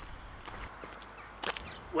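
Faint outdoor background noise, with one short, sharp crack about one and a half seconds in.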